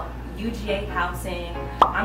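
A woman talking, with one short, sharp pop near the end.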